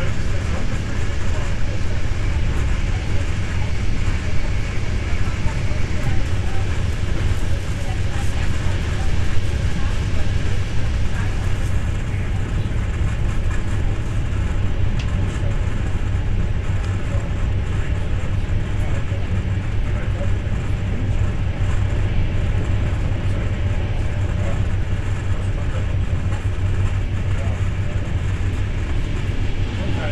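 Steady low rumble and running noise of a moving night train heard from inside a sleeper coach, its wheels rolling on the rails at speed.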